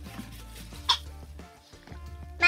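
Soft background music with steady sustained tones, and one brief sharp sound about a second in.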